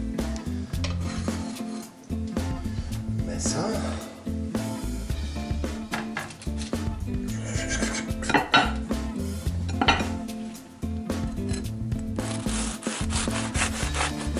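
Hands handling and rubbing a crusty baked bread roll, a dry rasping sound with a few louder scrapes about eight and ten seconds in, over steady background music.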